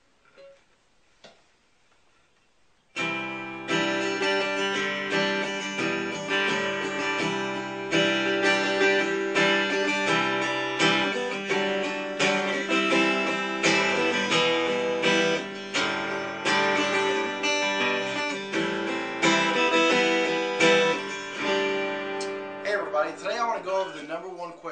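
Acoustic guitar strummed steadily, starting about three seconds in after a couple of faint handling knocks.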